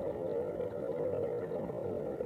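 Steady, muffled water noise picked up by a microphone submerged in a bathtub.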